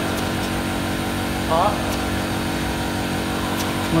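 A steady low mechanical hum, even throughout, with a single short spoken word about a second and a half in.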